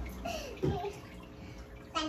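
Young girls laughing and exclaiming without words. One voice swoops up and then down in pitch about half a second in, and another rises near the end.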